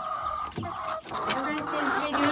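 Domestic hens clucking and calling in a coop, several overlapping drawn-out calls with a short break about halfway through.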